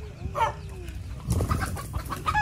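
Chickens clucking, with a short squawk about half a second in and a loud rustling scuffle in the second half.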